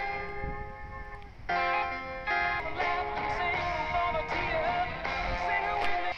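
Broadcast music with singing and guitar, heard as received by a home-built crystal radio.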